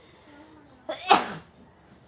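A person sneezes once about a second in: a brief faint drawn-in 'ah' and then a sudden loud burst that fades quickly.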